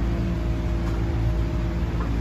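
Steady low mechanical hum and rumble of machinery running in a car wash bay, with a faint held tone over it.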